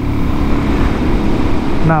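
Suzuki DR-Z400SM single-cylinder motorcycle running at a steady road speed, heard as a constant rush of wind and engine noise on a helmet-mounted microphone.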